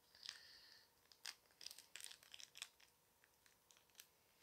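Faint crinkling and crackling of a clear plastic packet being handled, a run of light crackles that dies away in the last second.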